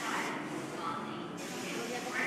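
R32 subway train pulling out of the station with a hiss of air that stops about a second and a half in, over people chattering on the platform.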